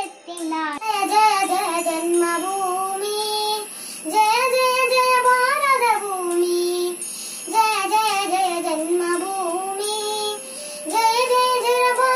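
A young child singing a song solo, in sung phrases with held notes. There is a short break just after the start, where a new phrase begins.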